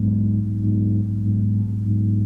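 A low, steady sustained chord from the band's keyboard, held without any new attack.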